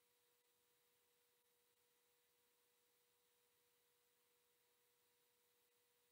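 Near silence, with only a very faint steady tone.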